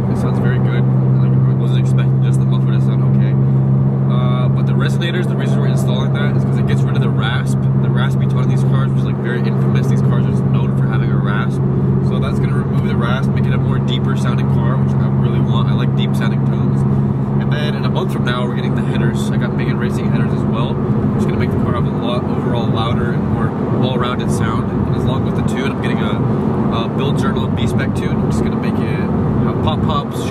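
BMW E46 M3's inline-six engine droning steadily while cruising, heard from inside the cabin through its new Top Speed muffler.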